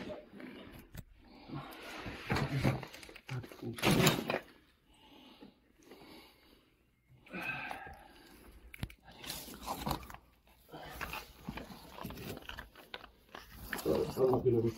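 A person clambering into a tight, rubble-floored tunnel: irregular scuffing and crunching of footsteps and body on debris, with bursts of breath and a few muffled words. The loudest scrape comes about four seconds in.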